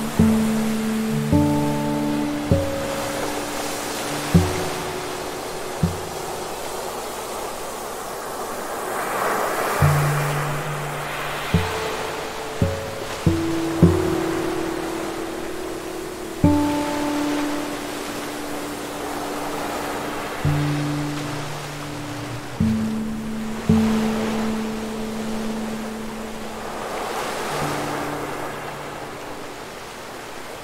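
Slow, soft acoustic guitar playing single plucked notes, each ringing out and fading, over ocean surf breaking on the shore. The wash of the waves swells and eases every several seconds.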